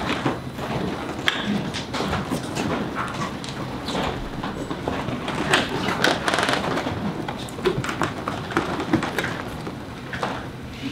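Several people moving about and sitting down at tables: footsteps on a hard floor, rolling office chairs being pulled out and settled into, and many scattered knocks and thumps of chairs against tables.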